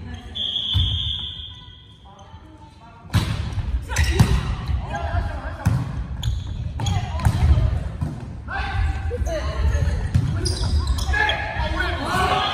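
Volleyball rally in a gymnasium hall: repeated sharp smacks of the ball being struck, echoing in the hall, coming thick and fast after about three seconds in.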